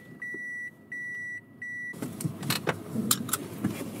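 A car's electronic warning chime beeps three times at an even pace, each beep about half a second long, then stops about halfway through. Sharp clicks and rustling follow as the seatbelt is unbuckled and handled.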